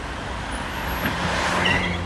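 Street traffic and motor vehicle engines running, a steady noise with a low hum that grows louder toward the end.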